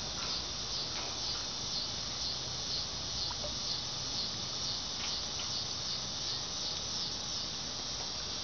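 Insects chirping outdoors in summer: a high chirp that repeats evenly about twice a second, with a few faint clicks about a second and five seconds in.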